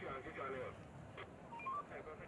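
Faint voices talking in the background, with a few short beeping tones that step in pitch about one and a half seconds in.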